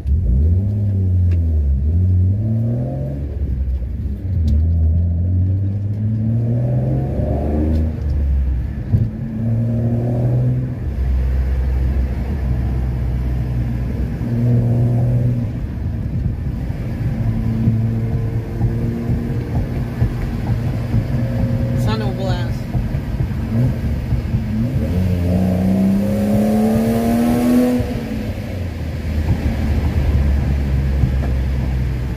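BMW E36 320i's six-cylinder engine and exhaust heard from inside the cabin, pulling up through the gears: the pitch climbs, then drops back at each shift, several times over. Between the pulls are steadier cruising stretches, with a long climb near the end.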